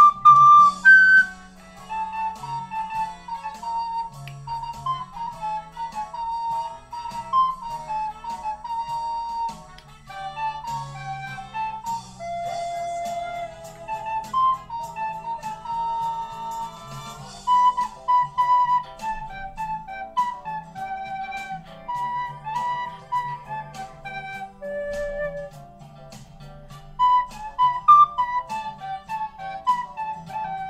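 Recorder playing a song melody, a run of short notes with some longer held ones, over a quiet low accompaniment.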